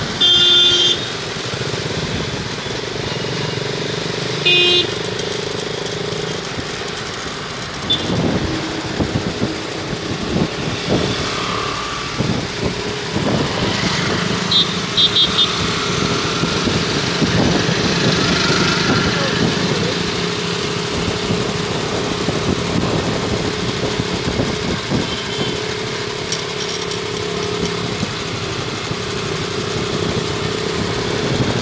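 Motorcycles and scooters running along a street in a group ride, a steady engine drone throughout. Two loud vehicle horn blasts, each about a second long, one at the very start and one about four and a half seconds in, and a few short beeps around fifteen seconds.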